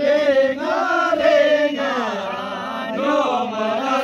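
Several men's voices singing a Kinnauri folk song together in unison, with long held notes that rise and fall.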